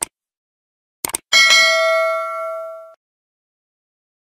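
Subscribe-button animation sound effect: a click, then a quick double click about a second in, followed by a notification-bell chime ringing out for about a second and a half.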